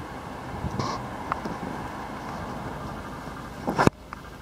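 Handling noise from a handheld camera moving around a car interior: a steady low rumble with a few small clicks and rustles, then one sharp, louder knock just before the end.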